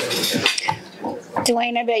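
Last of the audience applause fading into scattered clattering and knocks, then a woman starts speaking into the microphone about one and a half seconds in.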